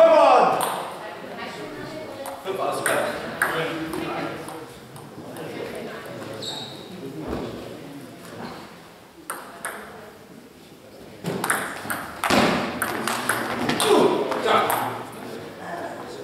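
Voices talking in a large, echoing sports hall, with a few short, sharp clicks of table tennis balls.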